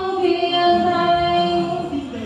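A woman singing a traditional Vietnamese ceremonial song in long held notes.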